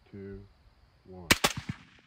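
Several suppressed rifles fired almost together: two loud, sharp reports a fraction of a second apart, followed by two fainter cracks and a short trailing echo.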